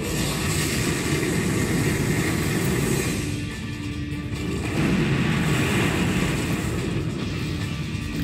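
Monster-film soundtrack: music over heavy low rumbling and booming effects, easing briefly about halfway through before swelling again.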